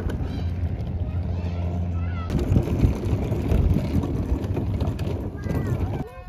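Wind buffeting the microphone outdoors, a heavy low rumble throughout, with faint distant voices.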